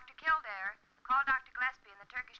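A woman's voice paging over a hospital wall loudspeaker, thin with little low end, in several short spoken phrases.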